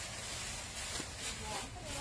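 Cloth rustling as a dress is pulled out of a pile and shaken open, over a steady hiss, with a faint voice near the end.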